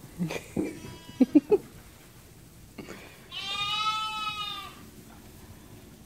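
A lamb bleating: one long, high call about three seconds in, its pitch dipping at the end. Before it come a few brief knocks and short sounds.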